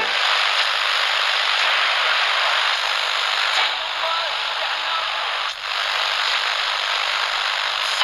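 A steady hiss of noise, thin and without low end, with a brief dip about five and a half seconds in, set between sung parts of the song.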